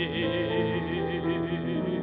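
Operatic tenor holding a long sustained note with wide vibrato over piano accompaniment in a Russian art song. The held note dies away near the end.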